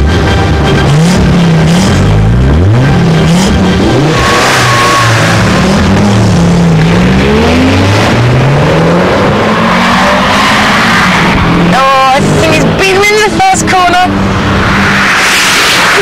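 Two turbocharged rally-bred cars, an Audi Sport Quattro and a Mitsubishi Lancer Evo 6, racing hard from the start: engine revving up and dropping back several times as it shifts through the gears, with tyre noise and tyre squeal as the wheels spin and the cars slide into a bend.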